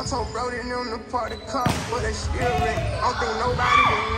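Music with singing throughout, and one sharp smack of a volleyball impact about one and a half seconds in.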